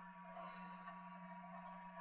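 Near silence: a faint steady hum from the recording chain, one low tone with a fainter higher whine.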